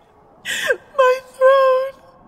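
A woman's voice making wordless sounds: a short breathy sound falling in pitch, then a brief note and a longer one held at a steady pitch.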